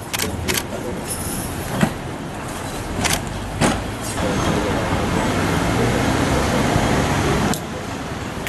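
A mahjong table wrapped in plastic sheeting is carried and set down on pavement, giving several sharp knocks and clatters in the first few seconds. These sit over a steady background of street noise, which grows louder about halfway through and cuts off abruptly near the end.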